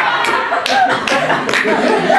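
Scattered hand claps from a live audience, several a second and uneven, over people's voices.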